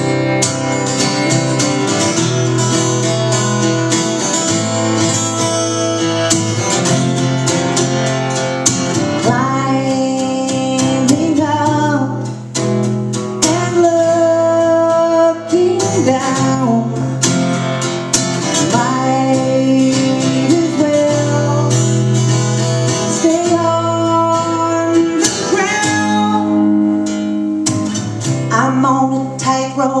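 Steel-string acoustic guitar strummed steadily, playing chords of a country-folk song.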